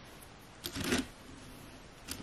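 A short cluster of small plastic clicks and rattles from parts of a mechanical keyboard with its keycaps removed being handled, a little over half a second in, otherwise quiet.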